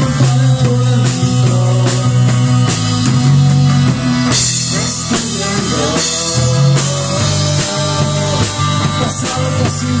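Live rock band playing an instrumental passage: two electric guitars, bass guitar and a drum kit with a steady ticking cymbal beat and a cymbal crash about four seconds in. The singer comes back in at the very end.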